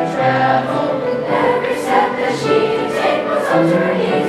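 Seventh-grade school choir singing with piano accompaniment, the notes held and changing about every second.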